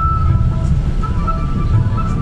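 A moving bus's engine and road noise, a steady low rumble, with a melodic tune playing over it.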